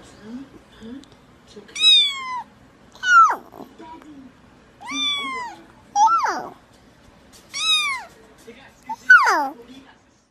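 A cat meowing again and again while held close: six loud meows, each falling in pitch, about one every second and a half. A small child's soft babble comes between them.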